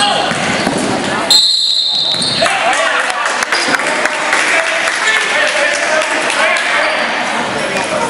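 Basketball game sounds in a gym: players' and spectators' voices and a ball bouncing on the floor. About a second and a half in, a referee's whistle blows once, a steady shrill tone lasting about a second.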